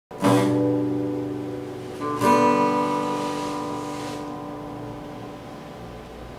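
Acoustic guitar: a chord strummed just after the start and left to ring, then a second chord strummed about two seconds in, ringing on and slowly fading away.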